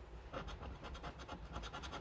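Scratching the latex coating off a lottery scratchcard, a quick run of short, faint scrapes.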